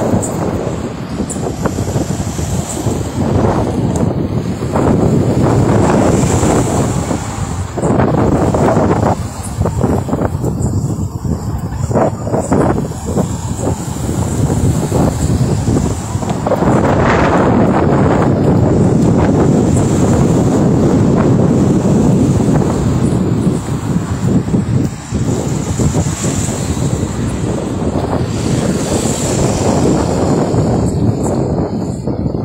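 Road traffic passing, heard under loud wind buffeting the microphone, with one stronger rush about seventeen seconds in.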